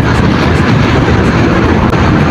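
Wind rushing over the microphone, mixed with road and scooter noise, while a Honda PCX160 rides at about 50 km/h: a steady, loud rush with no distinct tones.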